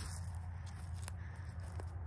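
Footsteps through dry leaves and grass, a couple of faint crunches over a steady low rumble.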